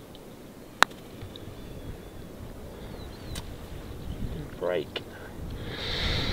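A single sharp click as a mallet putter strikes a golf ball, about a second in. A much fainter tick follows a couple of seconds later, and low murmured words come near the end.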